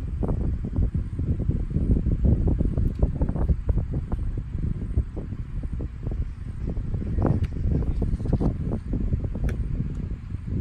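Wind buffeting the phone's microphone: a gusty, uneven rumble.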